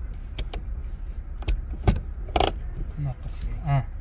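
Car cabin with a steady low engine rumble, broken by several sharp clicks and a short rattle about two and a half seconds in; a brief voice comes near the end.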